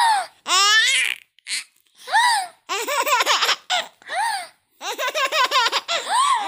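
A five-month-old baby squealing and laughing: a high, wavering squeal about half a second in, then bouts of quick, rhythmic laughs separated by short pauses.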